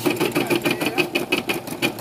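Computerized embroidery machine stitching a design in a hoop: the needle running at a fast, even rhythm of many stitches a second.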